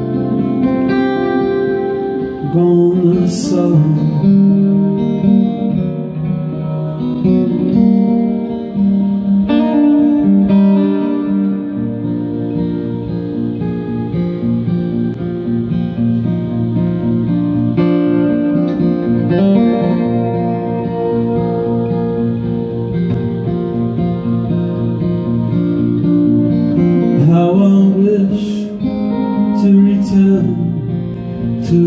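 Live acoustic guitar, picked and strummed with ringing sustained notes, played through a PA as an instrumental passage of a folk song.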